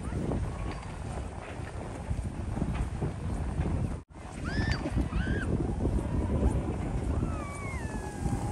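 Wind rumbling on the microphone, cut off briefly by an edit about halfway through, then children's high calls and squeals from the sledding slope in the second half.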